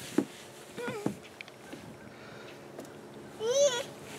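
A toddler's wordless high-pitched squeals: a short one about a second in and a longer wavering one near the end, with a light knock on the plastic slide at the start.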